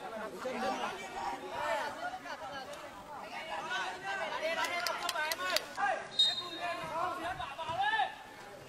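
Players' voices calling and chattering on a small football pitch, picked up faintly by the field microphone, with a few sharp clicks a little past the middle.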